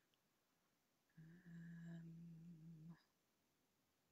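A person's long closed-mouth "hmm", held on one steady pitch for nearly two seconds in the middle, with near silence before and after it.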